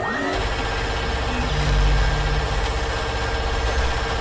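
Loud, steady mechanical rumble with a heavy low end, swelling about two seconds in: an engine-like machine sound effect.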